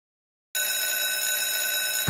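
Electric school bell ringing continuously: a steady, unbroken metallic ring that starts suddenly about half a second in.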